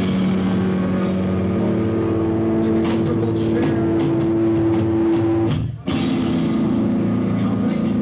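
Live noise-rock trio of electric guitar, bass and drums. Distorted guitar and bass hold a loud sustained note, with drum hits in the middle. The band cuts out abruptly for an instant a little over two thirds through, then comes back in.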